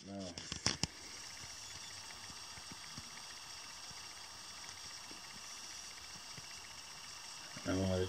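Faint steady background hiss of room tone, with a short murmured voice sound and a couple of small clicks in the first second, and speech starting again just before the end.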